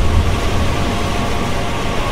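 Industrial sound-effect intro: a low mechanical rumble dying away after a boom, under a steady hiss. Faint sustained tones of dark music begin to come in near the end.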